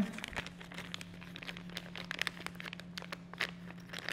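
Plastic parts bag crinkling irregularly as hands work small rubber and metal parts of a valve repair kit around inside it, over a faint steady low hum.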